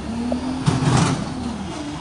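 A car drives slowly off over wet cobblestones, its engine running with a steady low hum and a rush of tyre and engine noise that swells about halfway through.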